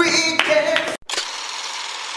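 Brief voices with two sharp hits, then a sudden cut to a steady hiss of an outro transition sound effect that stops abruptly.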